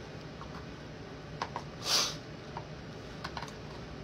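A metal fork clicking lightly against a plastic food container and the pickle and beet slices in it, a handful of scattered taps, with one short hiss about two seconds in.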